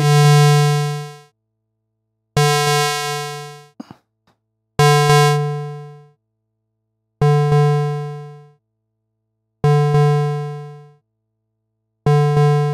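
Software synthesizer patch in Reaktor Blocks, the Synite Audio VPM oscillator through a filter, repeating the same low, buzzy note about every 2.4 seconds. Each note starts with a click and a bright tone, then darkens and fades out over about a second and a half.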